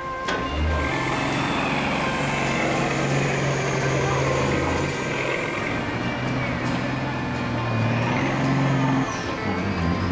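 Diesel semi-truck engine running hard and steady under full load while dragging a weighted pulling sled, its note stepping down about five seconds in and shifting again near nine seconds, with a high wavering whistle above it. Music plays underneath.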